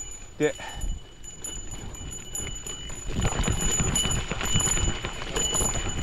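Gravel bike climbing a rough, grassy trail: tyre rumble with irregular knocks and rattles from the bike over bumps, louder from about three seconds in.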